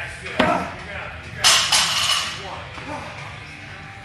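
Impacts during a workout of power cleans and box jumps. There is a sharp knock about half a second in, then a louder, longer crash with a bright clatter about a second and a half in.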